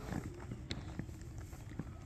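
Scattered light taps and rustles from handling a tarp and tent fabric at the tent's edge, over a low steady rumble.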